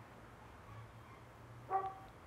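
A single brief pitched animal call near the end, over a faint steady low hum.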